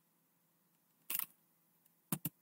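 Near silence, broken about a second in by a quick cluster of sharp computer clicks.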